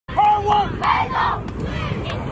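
A group of young football players shouting a team chant together, with a long held call near the start followed by shorter shouts.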